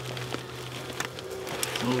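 Faint crackling and clicking as the papery comb of a small yellow jacket nest and fiberglass insulation are broken apart by a gloved hand, over a steady low hum.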